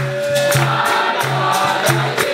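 Capoeira roda music: a group singing in chorus over berimbau and atabaque drum, with steady rhythmic hand clapping.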